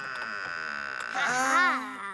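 Cartoon wooden cellar trapdoor creaking as it is heaved open, a long drawn-out creak that grows louder and wavers in pitch in the second half.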